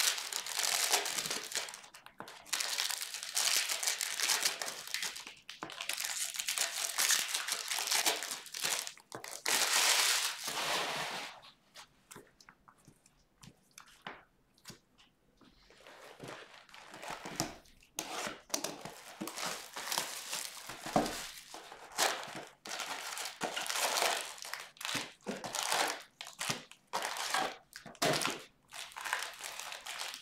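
Foil wrappers of Bowman Draft Jumbo baseball card packs crinkling and tearing as packs are opened and handled. It goes quieter a little before halfway, then comes back as scattered rustling and light clicks while the cards are handled.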